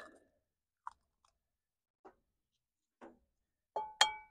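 Mostly near silence with a few faint small clicks, then near the end a sharp tap with a brief ringing: an egg being knocked against the rim of a ceramic bowl to crack it.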